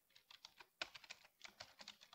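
Faint typing on a computer keyboard: a run of light, irregular keystrokes, several a second.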